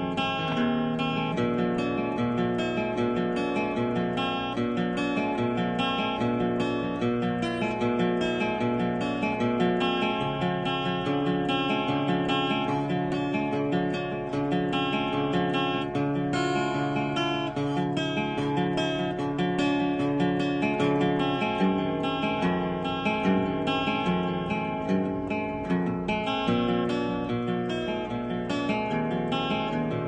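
Taylor acoustic guitar played solo with a capo, a continuous instrumental tune of picked notes and chords at an even, unbroken pace.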